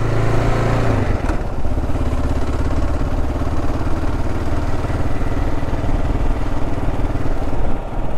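Kawasaki KLR650 single-cylinder motorcycle engine running at low town speed, with wind noise over it. A steady low hum changes about a second in to a quicker pulsing engine note.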